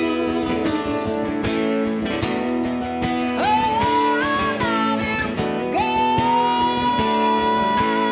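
A woman singing a country ballad live, backed by two acoustic guitars. About six seconds in she holds one long steady note.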